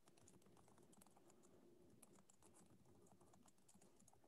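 Faint typing on a computer keyboard: quick, irregular key clicks over near silence.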